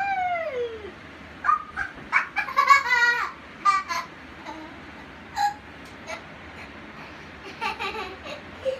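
A young child squealing and laughing: one long falling squeal at the start, then a run of short laughing cries between about one and a half and four seconds in, and a couple more later.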